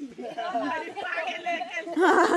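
Several people talking at once, their voices overlapping in a steady chatter, with no single clear speaker.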